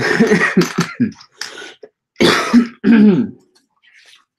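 A man coughing in several loud bursts and clearing his throat: a run of coughs in the first second, then two more about two and three seconds in.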